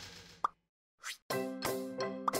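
Intro sound effects: a swish, then a short rising 'bloop' about half a second in, a brief swish after a pause, and then upbeat music with bright sustained chords and a steady beat starting a little over a second in.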